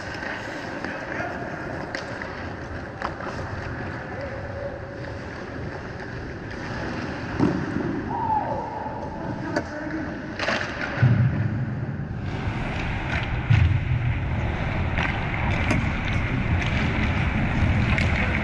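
Ice hockey play: skates scraping the ice, with sharp clacks of sticks and puck scattered through, the strongest a little past the middle, and players' voices calling.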